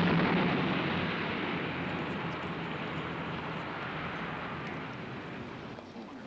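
A car passing close by: engine and tyre noise loudest at first, then slowly fading into steady street traffic.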